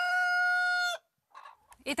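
Rooster crowing: the long, steady final note of its cock-a-doodle-doo, cut off sharply about a second in.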